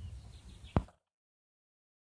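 Faint low handling noise with a single sharp click a little under a second in, then the audio drops out to complete silence.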